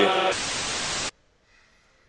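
A burst of hissing white-noise static, under a second long, cutting off abruptly into near silence: a transition sound effect between clips.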